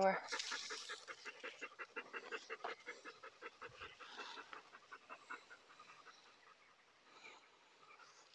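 A dog panting rapidly: quick, even breaths, several a second, that grow fainter over the first six seconds or so.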